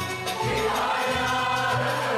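Mixed choir singing a Turkish classical (Türk Sanat Müziği) song with held notes that change every half second or so, accompanied by a small ensemble of violin, kanun, oud and frame drum.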